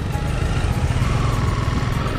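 Honda CBR250R's single-cylinder engine running at low speed in slow traffic, a steady low rumble heard from the rider's seat.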